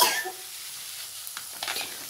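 Onion, tomato and peas sizzling steadily in a frying pan as dry masala oats are poured in from a packet, with a few faint rustles near the end.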